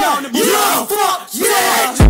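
Yelling voices in a run of short cries that rise and fall in pitch, with no heavy bass beat underneath.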